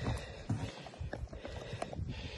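Handling noise: a few irregular light knocks and bumps as an animal carcass is shifted about on a pickup tailgate.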